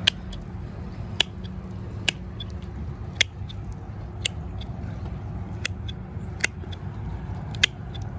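Red-handled hand pruners snipping through the tough roots of an Operculicarya decaryi: a series of sharp clicks at irregular intervals, about one a second, with fainter clicks between some of them.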